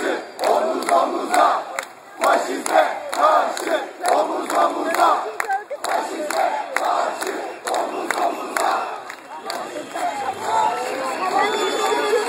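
Large crowd of football supporters chanting slogans in rhythm, with sharp claps in time with the chant. Near the end, music with sustained notes comes in over the crowd.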